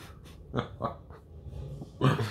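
A person laughing quietly: a few short, breathy chuckles.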